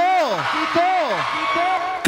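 A man's voice speaking into a microphone over a hall PA system, in several short phrases that fall in pitch.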